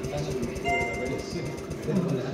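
A steady electronic beep lasting under a second from a touchscreen roulette gaming terminal as chips are placed, over a murmur of voices.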